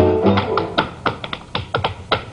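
Tap shoes striking a stage floor in a quick, uneven run of about ten taps, over musical accompaniment.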